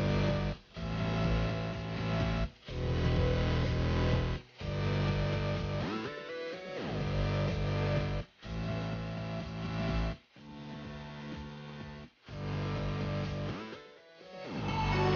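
Background music led by guitar, playing sustained chords in phrases about two seconds long with short breaks between them.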